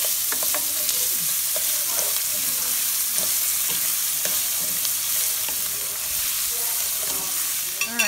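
Rice and chopped onion sizzling steadily in hot oil in a stainless steel pot while being sautéed, with light scrapes and clicks from a wooden spoon stirring against the pan.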